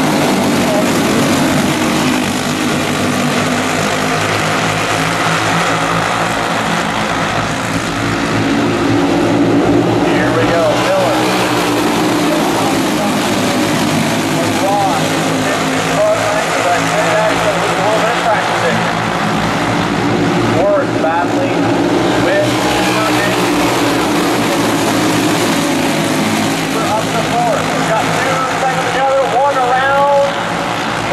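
A pack of racing go-karts' small single-cylinder engines buzzing together as the field laps the track, their pitches rising and falling as the karts go through the turns.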